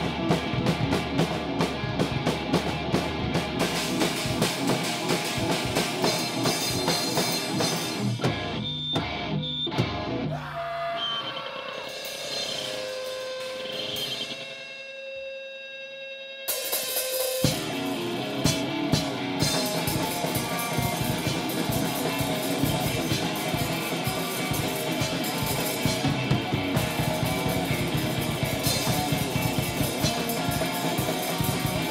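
Electric guitar and drum kit playing loud live rock with dense cymbal and snare hits. About ten seconds in the drums stop and the guitar holds sustained, bending notes alone for several seconds. Then guitar and drums come back in together abruptly around sixteen seconds in.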